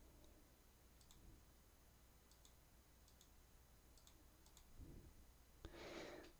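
Near silence, with several faint, short clicks of a computer mouse.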